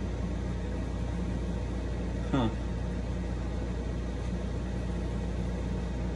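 A steady low machine hum, like a motor or air conditioner running, with one short spoken "huh" about two seconds in.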